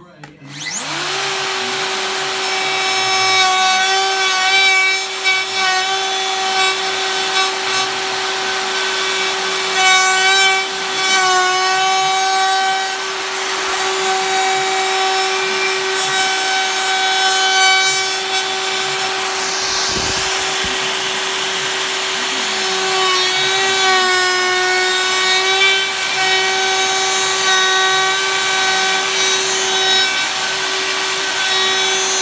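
DeWalt plunge router starting up with a rising whine, then running at high speed as a round-over bit cuts along the edge of a wooden board. Its pitch wavers and sags slightly at times as the bit takes load.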